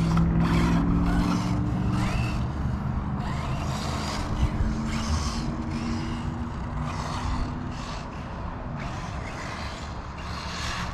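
Kyosho MP9e electric 1/8-scale RC buggy running around a dirt off-road track. Its motor hum grows gradually quieter over the few seconds as the car moves away.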